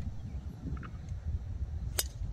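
A golf driver striking the ball off the tee: one sharp, short crack near the end, over a low rumble of wind on the microphone.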